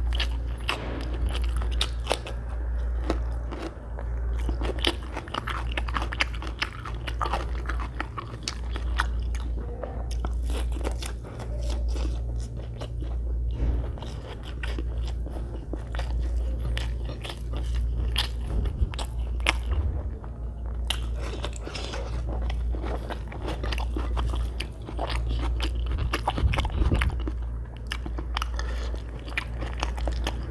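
Close-miked chewing and mouth sounds of a person eating egg biryani, with many small wet clicks and crunches, and fingers working rice on a glass plate. A steady low hum runs underneath.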